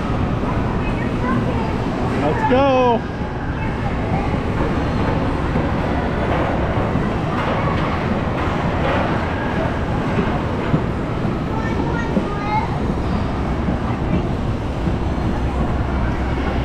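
Indoor amusement-park din: a steady wash of crowd noise over a low machinery rumble, with one high, wavering shout about two and a half seconds in.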